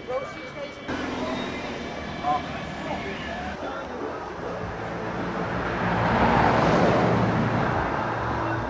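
A motor vehicle passing on the road, its engine and tyre noise swelling to a peak a little after the middle and then easing off, with faint voices in the background earlier on.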